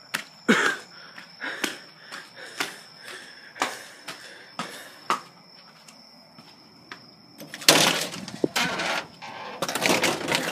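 A series of sharp knocks, about one a second, over a faint steady high whine, then a loud rustling, scuffling noise near the end.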